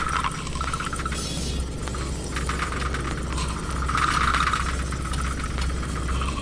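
Live improvised electronic music from modular synthesizer, turntables and electronics: a steady low drone under a mid-pitched hissing texture that swells and fades, with scattered clicks, fullest about four seconds in.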